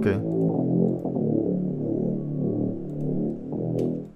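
A software instrument in Kontakt playing a slow line of long held low notes: the bass pattern copied and dropped an octave as a background layer in a beat.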